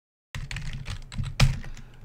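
Typing on a computer keyboard: a run of quick keystrokes starting about a third of a second in, with one louder key strike about a second and a half in.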